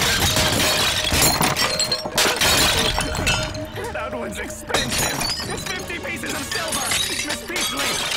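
Pottery shattering and breaking apart in a loud burst that dies down after about three seconds, over background music.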